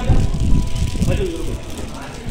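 Indistinct voices of people talking, over a strong low rumble on the phone's microphone.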